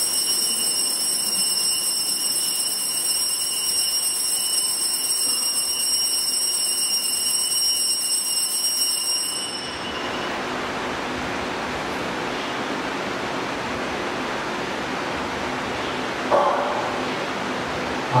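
An altar bell rings continuously at the elevation of the chalice during the consecration. It is a high, steady ring with several overtones, held for about nine seconds before it stops abruptly, leaving a steady hiss.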